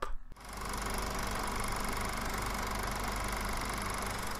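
A motor running steadily, starting about half a second in, used as a sound effect for digging up.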